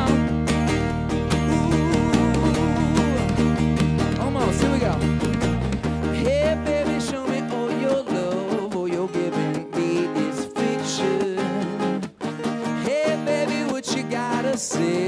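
Live pop-rock band playing, with electric and acoustic guitars, drums and a lead voice singing. The heavy bass drops out about six seconds in, leaving a sparser passage of guitars and voice.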